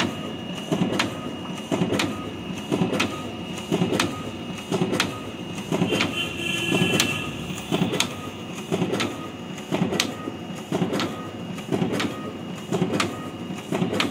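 Ricoh DX 2430 digital duplicator running a print job, printing wedding cards one after another in a steady mechanical rhythm with a sharp click about once a second.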